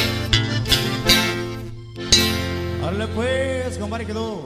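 Sierreño band playing live: guitars and bass strike a quick, even rhythm, then the song ends on one long held chord. A voice rises and falls over that closing chord near the end.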